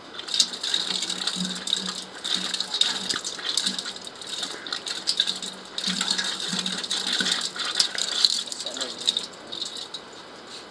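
Water running from an outdoor standpipe tap and splashing irregularly onto the concrete and metal vessels below, a crackling, clinking patter that eases off at the end.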